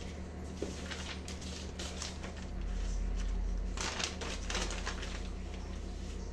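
Sheet of pattern paper being handled and unfolded: irregular rustling and crinkling, with a louder crackle about four seconds in.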